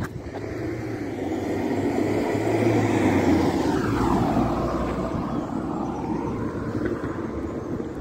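A Volkswagen New Beetle driving past: its tyre and engine noise builds over about three seconds, drops in pitch as it passes about halfway through, then fades away.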